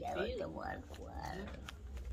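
Quiet speech: a brief "sí" and soft, frail-sounding voices. There is a light click near the end.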